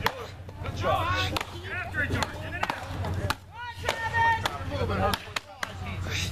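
Axes chopping into upright standing blocks of wood: a quick, uneven series of sharp strikes, about two a second, as more than one chopper works at once.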